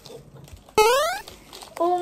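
A short, high-pitched vocal squeal that rises steeply in pitch for about half a second, a little under a second in. Near the end, a woman starts to say "oh".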